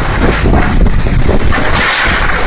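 Whirlwind (puting beliung) gusts blasting across a phone microphone: a loud, unbroken rush of wind with a deep rumble.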